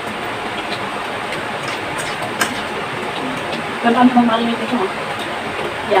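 A steady background hiss, with a few words of speech about four seconds in.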